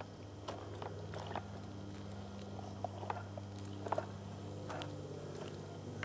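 Scattered light clicks and knocks as a G-scale model steam locomotive is pushed by hand back along its track into a wooden ramp carrier, over a steady low hum.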